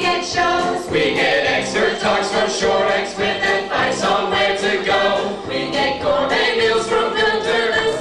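A group of men and women singing a song together in chorus.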